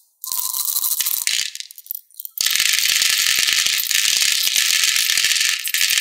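Small hard beads rattling out of a glass jar onto a plastic tray: a short rattle near the start, then a steady pouring rattle from about two and a half seconds on.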